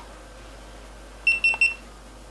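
Three quick, high-pitched electronic beeps in close succession, each very short.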